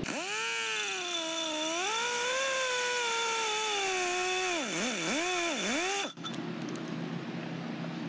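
Power grinding tool working the inside of a notch in chromoly tube. Its motor whine sags and wavers as it bites, dips sharply twice about five seconds in, and cuts off suddenly about six seconds in.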